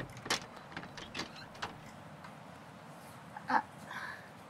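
Wooden front door being opened from inside: a few sharp knocks and clicks of the door and its lock, the first the loudest, then a brief creak about three and a half seconds in as the door swings open.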